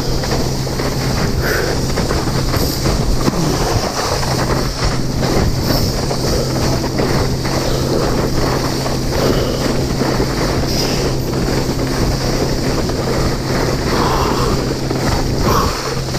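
Water skis running fast over choppy water, slapping the chop in a rapid, uneven run of knocks, with loud spray and wind rushing on the camera microphone.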